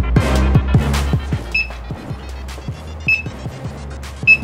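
Background music with a steady beat and deep bass that thins out after about a second. A short high beep repeats about every second and a half.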